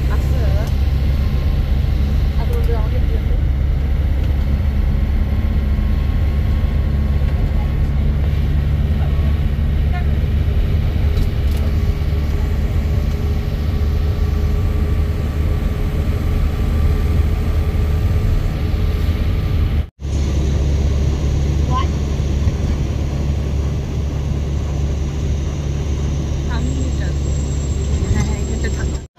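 Steady low drone of a bus's engine and road noise heard from inside the cabin while it drives. The sound cuts out for an instant about twenty seconds in, then carries on unchanged.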